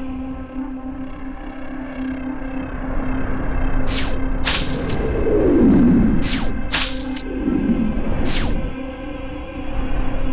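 Tense film background music: a steady low drone with slow descending swoops. From about four seconds in come about five short, sharp sound-effect hits.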